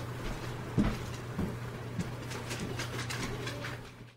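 Footsteps and a few soft knocks and rustles over a steady low hum, with the loudest knock about a second in.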